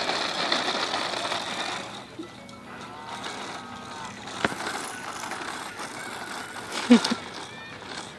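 Plastic wheels of a toddler's push-walker toy rolling and rattling over asphalt, most strongly in the first two seconds, with a short electronic tune from the toy, a sharp click about four and a half seconds in, and a brief child's vocal sound near the end.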